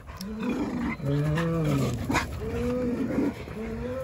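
Jindo dogs growling and grumbling as they play-wrestle, in a chain of about four drawn-out pitched calls that rise and fall, each lasting half a second to a second.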